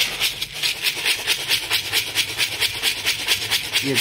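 Loose pigeon feed grain (wheat with mustard, millet and other small seeds) rustling and rattling in a plastic container as it is mixed by hand, a steady rhythmic swish about six or seven times a second.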